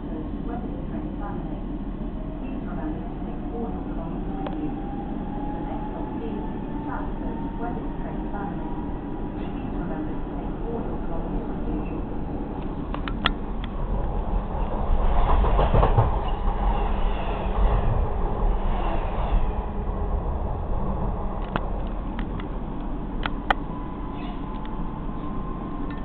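Running noise heard from inside a moving electric train carriage: a steady rumble with a thin whine that climbs slowly in pitch as the train gathers speed. About midway it gets louder and rougher for several seconds, with a few sharp clicks.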